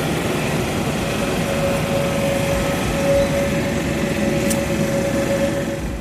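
Aircraft engine running steadily: a constant whine over an even rumble.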